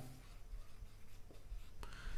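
Marker pen writing on a whiteboard: faint scratching strokes, with a short tap near the end.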